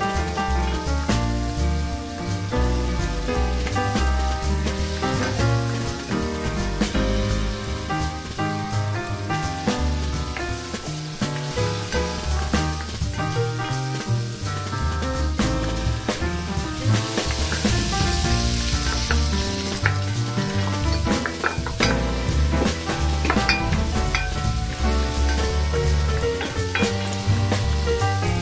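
Banana peel pieces, onion and pepper sizzling as they fry in oil in a pot, with a louder stretch of hiss for about two seconds past the middle. Background music with a bass line plays over it.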